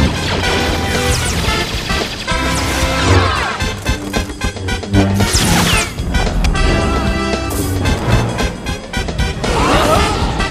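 Lightsaber duel sound effects: rapid humming swings with sweeping pitch and repeated crackling clashes and impacts, over loud music.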